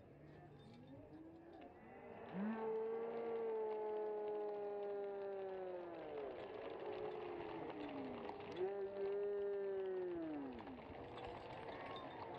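People yelling in celebration of a goal: two long, drawn-out cries, the first starting about two seconds in and held for about four seconds, the second shorter and just before the end, each dropping in pitch as it fades.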